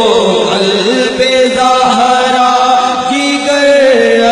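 Male voices chanting an Urdu naat through microphones, unaccompanied, with long held notes and wavering melodic ornaments.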